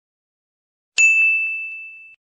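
A single high, bell-like ding sound effect that strikes about a second in after dead silence and rings out, fading over about a second.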